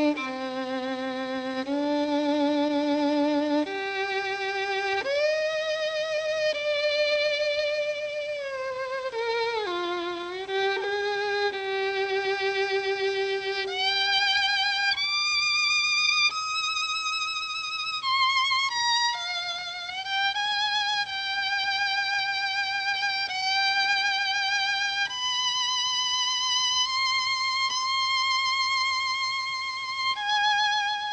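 Solo violin playing a slow melody: long held notes with wide vibrato, sliding up and down between notes.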